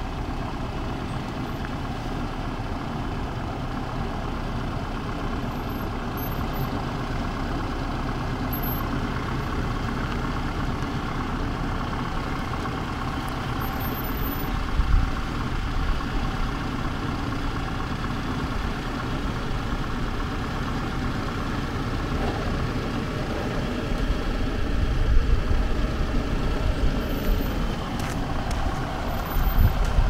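Force Gurkha's four-cylinder diesel engine running at low revs as the 4x4 crawls down a steep, rocky slope. It is steady, with a few short, louder low rumbles about halfway and again near the end.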